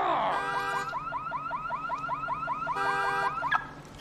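Car alarm going off after the car is kicked. It cycles through its tones: a fast stepped warble, then a run of quick rising whoops about five a second, then the stepped warble again, stopping just before the end.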